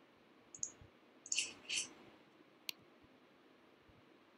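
Faint computer mouse clicks: a few soft clicks in the first two seconds and one sharper click near three seconds in.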